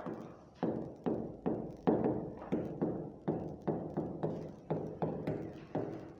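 A stylus knocking against the glass of an interactive touchscreen board while writing, about two to three knocks a second, each with a short ringing tail.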